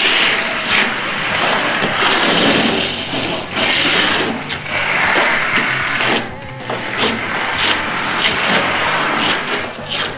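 Steel plastering trowels scraping wet lime plaster (shikkui) across a wall, a run of rasping strokes about a second long each, one after another, as the plaster is spread and pressed flat.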